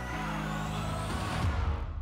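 Closing background music: a sustained low chord under a high whoosh that rises steadily, with a heavier low hit about one and a half seconds in before it fades out.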